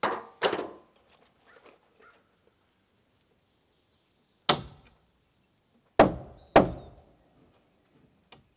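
Hammer blows on a wooden wall stud: two quick strikes at the start, one about halfway, and two more close together near the end. An insect chirps in a steady pulsing rhythm behind them.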